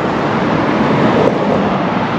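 Steady road traffic noise, an even rush with no single vehicle or event standing out.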